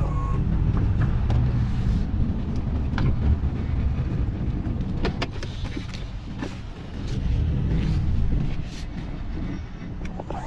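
Tow truck with a self-loading wheel-lift running at low speed: a steady engine rumble with the knocks and clanks of the lift arms and hydraulics being worked as it lines up to pick up a car.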